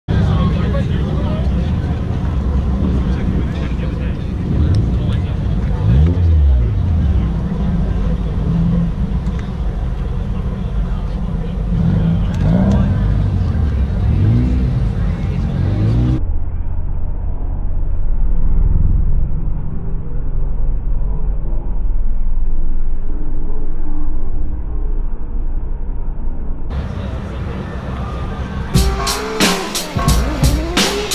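Car meet sound: car engines running and revving, with people talking in the background and music underneath. About halfway through the sound turns muffled, and near the end there is a quick run of sharp clicks.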